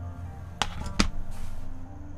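Two sharp clicks about half a second apart as a paintbrush knocks against a plastic paint palette, then a short scrape of the bristles working paint, over quiet background music.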